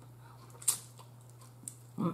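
Mouth sounds of someone eating snow crab meat: one short click about two-thirds of a second in and a fainter one later, otherwise quiet over a steady low hum.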